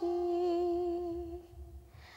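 A woman singing, holding one long steady note at the end of a sung line, which fades away after about a second and a half, with no instruments.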